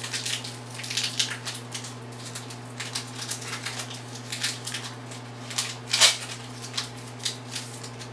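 Foil booster-pack wrapper crinkling and tearing open as it is unwrapped: an irregular run of sharp crackles, loudest about six seconds in.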